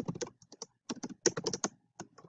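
Computer keyboard typing: quick keystrokes in two short runs, with a brief pause a little over half a second in.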